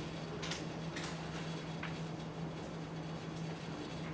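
Chalk on a blackboard: a few short taps and scrapes as lines are drawn, spaced a second or so apart, over a steady low room hum.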